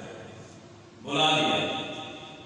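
A man's amplified voice from a lectern microphone in a reverberant hall: the echo of the last phrase dies away, then one short loud phrase about a second in, its echo trailing off.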